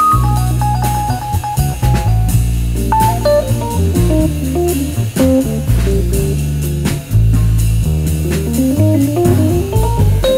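Jazz instrumental passage: a Rhodes electric piano plays quick single-note runs that climb and fall, over upright double bass and a drum kit with cymbals.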